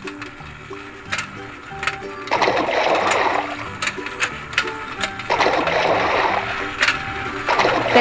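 A simple stepping electronic tune plays over the whir of a motorized toy fishing game, with scattered plastic clicks. Splashing sound effects come three times: about two, five and seven and a half seconds in.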